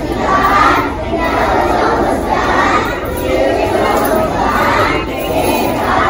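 A large group of young children's voices calling out together over the chatter of a crowded hall.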